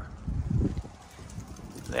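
Low, uneven rumble on a handheld microphone while the camera is carried, with a man's voice starting near the end.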